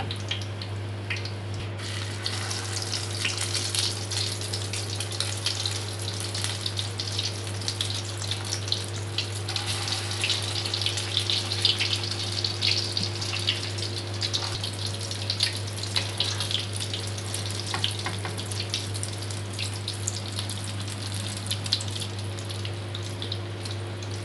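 Breadcrumb-coated chicken and potato kababs frying in hot oil over a medium flame: a steady crackling sizzle of many tiny pops, over a low steady hum.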